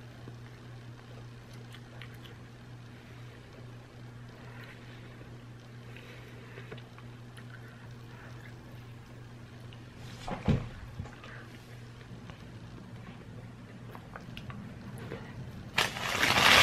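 A person quietly chewing a bite of a soft breakfast burrito over a steady low electrical hum, with one brief thump about ten seconds in.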